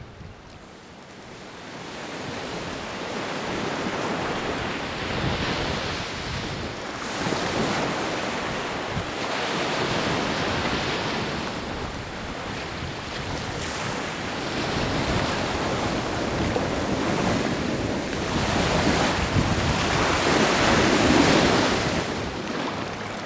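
Sea wind buffeting the microphone over the wash of waves. It swells and eases in gusts, starts low, and is loudest near the end.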